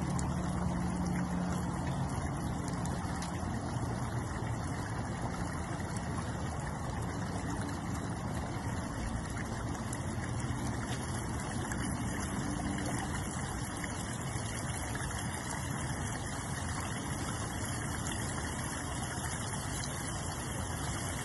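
Water from a newly started pond pump spilling over a flat waterfall stone and splashing into a garden pond, a steady rushing sound with a low hum underneath.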